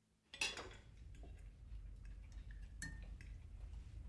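Cutlery clinking and scraping on china plates at a dinner table. It opens with a sharp clatter just under half a second in, then goes on as scattered light clinks over a low steady hum.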